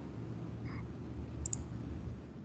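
Two faint clicks from a computer keyboard as a key is pressed to delete a letter in a document, over a steady low hum of microphone and room noise.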